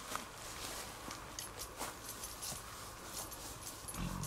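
Footsteps and light rustling in grass while walking: a scattered series of short, soft steps over a faint steady background.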